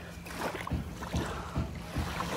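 Small waves lapping at a sandy lake shore, an even hiss of water with low, irregular rumbles.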